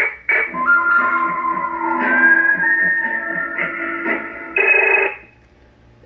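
A CB radio caller box (incoming-call sounder) fitted to a Stryker SR-955HP plays its fourth incoming-call jingle through the radio's speaker: a short musical tune of about five seconds that ends in a brighter, higher passage and stops a little before the end.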